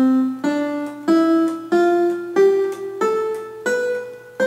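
Electronic keyboard played one finger at a time: an ascending C major scale, do, re, mi, fa, sol, la, si, each note struck about two-thirds of a second apart and climbing steadily in pitch.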